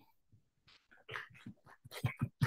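Faint, scattered applause, broken into short irregular claps that start about a second in.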